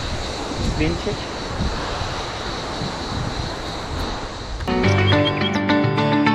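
Steady rush of a fast-flowing mountain stream. About four and a half seconds in, background music with plucked guitar cuts in suddenly and carries on.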